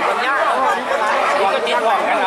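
Lively, animated talking by more than one voice, with pitch swooping up and down.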